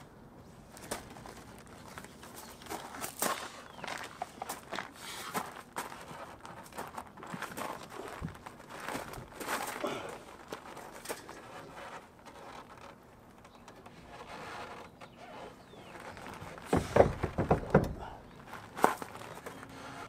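Hands working on the wiring inside an open car door: scattered clicks, knocks and rustles, with a short run of louder knocks about three-quarters of the way through.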